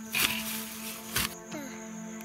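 Background music with long held tones, over which a hoe scrapes into soil just after the start and lands with a thud about a second in.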